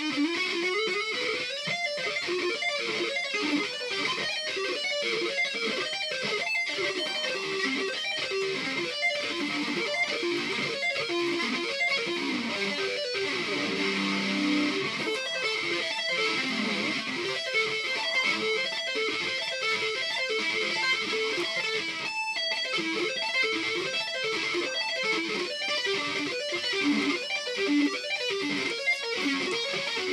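Les Paul-style electric guitar played solo in a metal style: a fast, continuous run of quickly changing notes, with a brief break about 22 seconds in.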